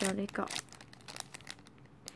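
Clear plastic packaging of a ballpoint pen crinkling as it is handled: a cluster of short crackles in the first half-second, then faint scattered rustles.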